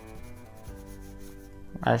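A 4B drawing pencil rubbing rapidly back and forth on paper as an area is shaded in, under soft background music with held notes. A man's voice comes in at the very end.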